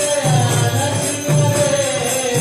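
Devotional kirtan music: a drum keeps a steady repeating beat under jingling metal percussion and a held, gently bending melody line.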